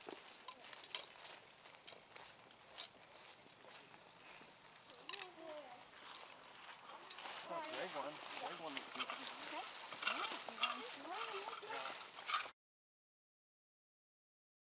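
Faint outdoor field sound: a few soft footsteps and clicks, then distant people talking from about five seconds in. It all cuts off suddenly into silence shortly before the end.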